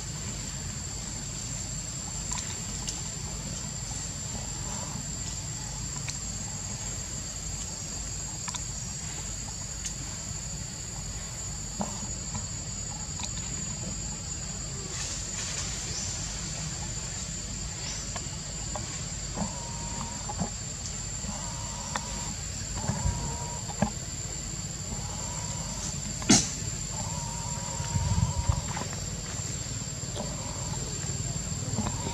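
Steady high-pitched insect drone over a low background rumble, with a few short faint calls in the second half and one sharp click a few seconds before the end.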